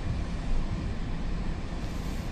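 Steady low rumble of background room noise with a faint hiss, and no voices.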